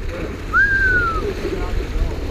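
Surf washing over and around jetty rocks, with wind rumble on the microphone. About half a second in, one short whistle-like tone rises and then slowly falls.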